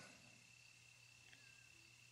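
Near silence: faint room tone with a faint steady high-pitched whine and a low hum.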